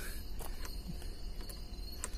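Faint, steady high-pitched insect trilling, with a few light clicks.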